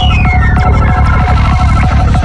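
Dark hi-tech psytrance at 190 bpm: a kick drum beats about three times a second under a droning bassline, with pulsing synth notes above. A high synth sweep falls in pitch and ends about half a second in.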